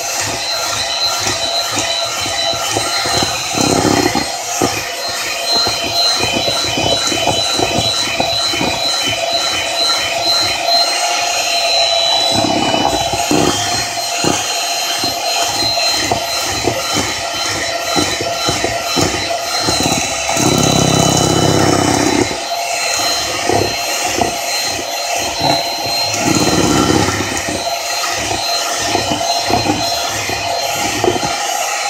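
Handheld electric mixer running steadily with a high whine as its beaters whir through strawberry cake batter in a plastic bowl, with occasional low thumps a few times along the way.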